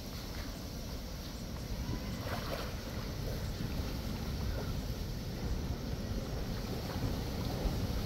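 Steady wind rumble on the microphone, with faint splashing and lapping from a swimmer moving through pool water.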